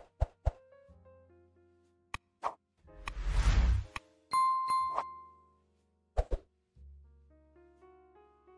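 Sound effects of an animated like-and-subscribe overlay over soft background music. There are several quick pops and clicks, a whoosh about three seconds in, and a bell ding just after it, ringing for under a second. Two more clicks follow about six seconds in.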